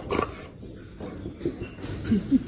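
Excited mixed-breed dog vocalizing in short sounds, the loudest just at the start and smaller ones about a second and a half in and near the end.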